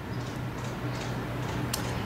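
Light clicks and rustle of a metal crochet hook working cotton yarn, over a steady background hiss and low hum; a few faint ticks, with one sharper click near the end.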